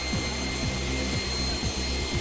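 Aircraft engines running at an airport apron: a steady rushing noise with a high, even whine over a low hum.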